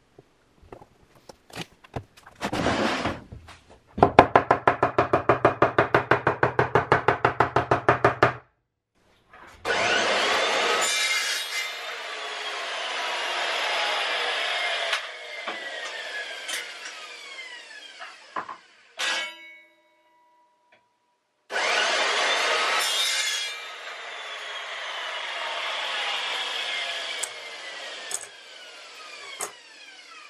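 Hand sawing: a run of quick, even strokes, about five a second, then two longer stretches of continuous scraping with pitches sliding downward. A short ringing tone sounds between the two stretches.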